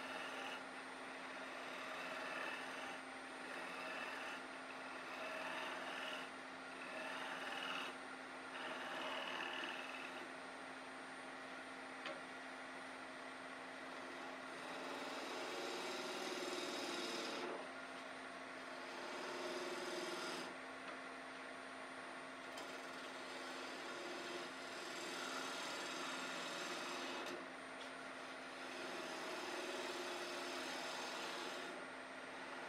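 Wood lathe running with a steady motor hum while a hand-held turning tool cuts the outside of a spinning piece of branch wood. The cutting hiss comes and goes in passes of a few seconds.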